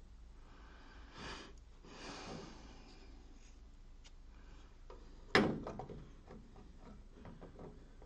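Quiet handling noises from hands working a beam combiner mirror mount inside a metal laser cabinet: two soft rubbing swishes about one and two seconds in, then a single sharp knock about five seconds in, followed by a few small clicks.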